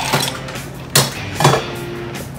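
Ice cubes tipped from a metal scoop into a glass mason jar, clinking and knocking in a few sharp strokes, the loudest about a second in and a second and a half in. Background music plays underneath.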